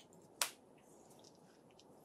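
A single sharp click about half a second in, otherwise faint room tone.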